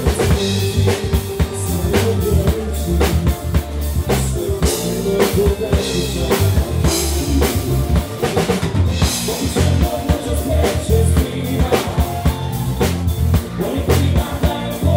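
Live band playing an instrumental passage without vocals: drum kit with kick and snare keeping a steady beat under acoustic guitars and electric bass.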